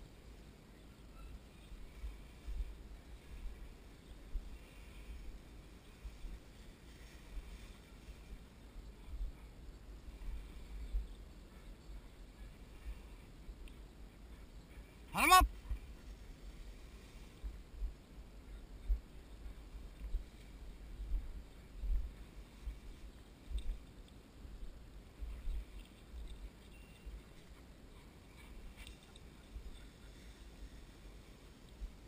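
Wind buffeting a body-worn camera's microphone in gusts, with a faint swish of tall grass as the handler walks through it. About halfway through there is one short, loud call that rises in pitch, the loudest sound here.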